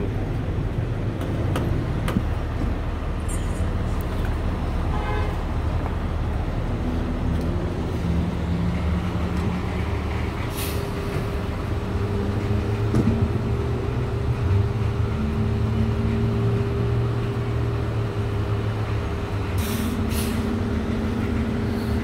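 Fire ladder truck's diesel engine idling with a steady low rumble. A steady hum joins about halfway through, and short hisses of air come about ten seconds in and again near the end.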